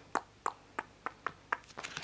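Sleeved trading cards being handled and flicked through one by one: about seven short, light clicks, roughly three a second.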